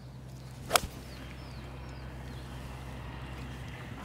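A golf club striking a ball once on a full swing, a single sharp click about three-quarters of a second in.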